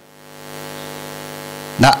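Steady electrical mains hum from the recording or sound system, a buzzy stack of even tones that swells in the first half second and then holds level; a man's voice begins reading again near the end.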